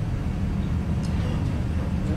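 A steady low rumble of room background noise, with no speech.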